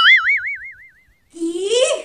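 Cartoon 'boing' sound effect: a springy, wobbling tone that dies away over about a second. Near the end comes a short, rising, voice-like sound.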